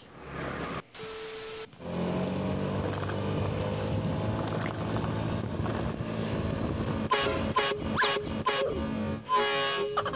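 Background music with a steady beat. From about seven seconds in, a series of short, loud horn blasts: a truck air horn fitted to a Honda Beat scooter.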